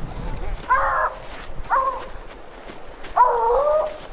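Hunting hounds baying on a mountain lion's trail: three calls, about one, two and three and a half seconds in, the last the longest.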